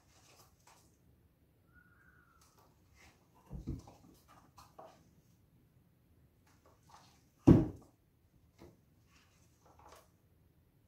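Light clicks and knocks of paint cups and bottles being handled on a work table as acrylic colours are layered into the cups. The louder knock comes about three and a half seconds in and the loudest about seven and a half seconds in. A brief faint squeak comes about two seconds in.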